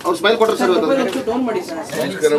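Male voices chanting Sanskrit puja mantras, with several voices overlapping.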